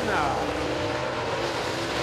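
Super late model dirt race cars' V8 engines running hard through the turns, a steady engine noise carried across the track.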